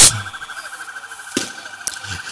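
Motorcycle engines idling, a faint steady pulsing sound, with two sharp clicks in the second half.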